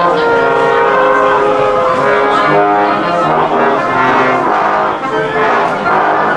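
Brass band music: several brass instruments playing sustained notes together, moving from chord to chord.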